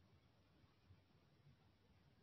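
Near silence: faint low room tone.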